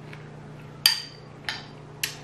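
A metal spoon clinking against a ceramic bowl twice while scooping: a loud clink with a brief ring a little under a second in, then a fainter one about half a second later, over a low steady hum.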